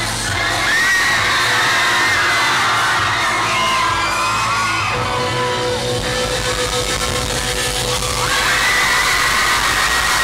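A club crowd screaming and cheering, many high-pitched shrieks and whoops at once. About halfway through, a live band's amplified instruments start up under the cheering, with one sustained note and a low pulsing bass.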